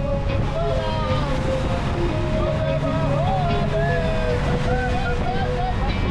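Motorboat running at speed, its engine mixed with rushing wake and wind noise, with a song's sung melody playing over it.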